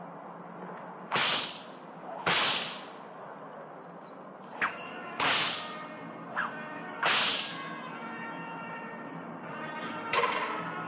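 An animal tamer's long whip swung and cracked four times, each loud crack trailing a short swish, with two lighter snaps in between.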